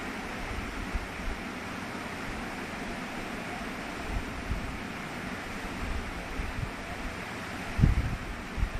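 Steady background noise with no speech, broken by a few low thumps; the loudest thump comes near the end.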